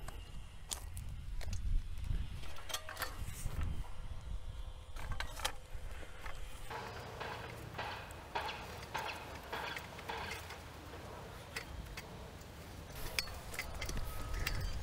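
Hand auger being turned down into soil: quiet scraping and scattered clicks as the bucket cuts into the ground.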